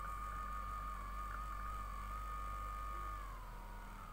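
Lifelong 25-watt handheld electric body massager running at full speed with a steady whine. A little over three seconds in, the pitch slides down and the sound gets quieter as its speed is turned down.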